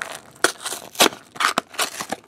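Plastic wrapper of a 2013/14 Select Hockey card pack crinkling and crackling in the hands as the pack is pulled open, in sharp, irregular bursts.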